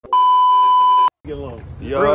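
A steady, high-pitched test-tone beep, the broadcast tone that goes with TV colour bars, held for about a second and cut off abruptly, followed by men's voices.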